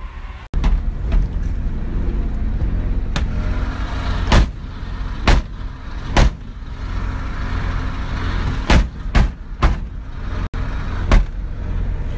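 Car cabin noise while driving: a steady low road and engine rumble with about ten sharp knocks scattered through it. The sound cuts out for an instant twice.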